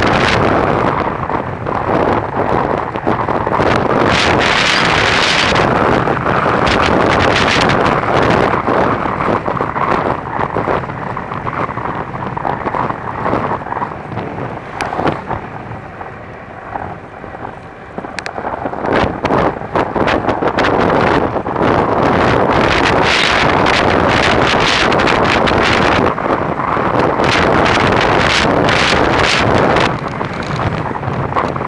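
Wind buffeting the microphone of a bicycle rider's camera during a fast downhill run, a steady loud roar that eases for a few seconds around the middle and then builds again.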